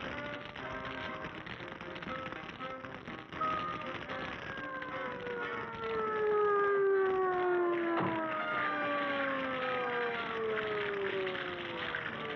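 Cartoon soundtrack music in short notes, then from about three seconds in a long, slowly falling whistling glide, several tones sliding down together for most of the rest, with a sharp tick about eight seconds in, as something drops from the sky.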